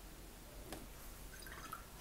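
Faint sounds of a wet watercolour brush picking up paint: a light tap and a few small wet clicks against low room hiss.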